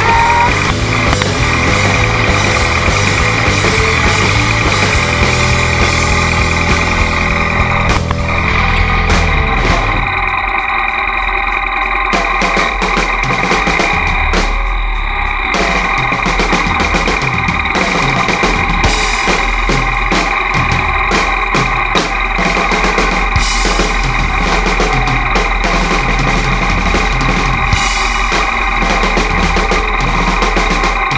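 Rock music for the first eight seconds or so, then the Triumph motorcycle's engine idling with a steady low pulse.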